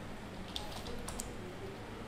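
A few faint keystrokes on a computer keyboard, clustered around the middle: code being typed into a text editor.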